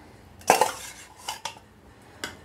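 Steel kitchen utensils and cookware clinking: a loud metallic clink about half a second in that rings briefly, then two lighter clinks a little later.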